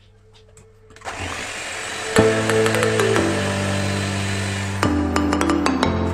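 Electric hand mixer starting about a second in and running steadily, whisking cake batter, with background music coming in over it shortly after.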